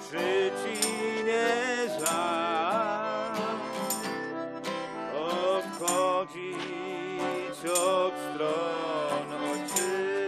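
Small folk street band playing a lively tune: strummed acoustic guitar with accordion and fiddle carrying a wavering melody.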